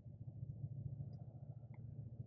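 Faint, steady low hum: background room tone with no distinct event.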